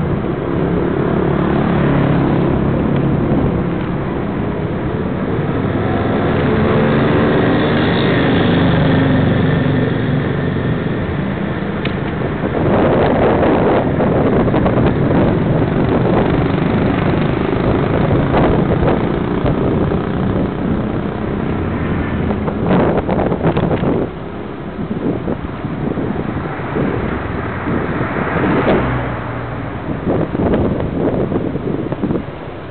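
Motor vehicle engines passing close to a moving bicycle, the engine note rising and falling over the first ten seconds or so, above a steady road and wind rumble. Sharp rattles and knocks come in clusters around the middle and again near the end.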